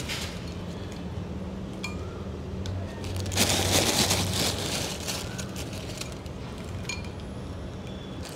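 Crispy fried noodles rustling and crackling as they are pinched from a thin plastic bag and sprinkled onto soup in a glass bowl, with a few light clinks. There is a louder burst of crinkling about three and a half seconds in.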